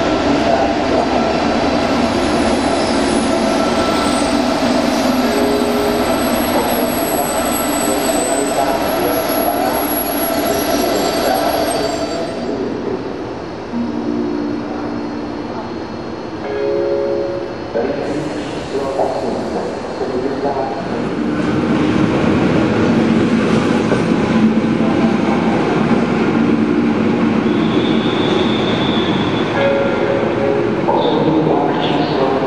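Czech electric locomotive running past at close range on station tracks: a loud, steady running noise with high-pitched wheel squeal over the first twelve seconds or so. The noise dips near the middle, where a few short held tones sound, then builds again as train movement continues.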